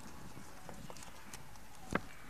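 Faint taps and paper rustling as small picture cards are pressed onto a whiteboard by hand, with one sharper tap near the end.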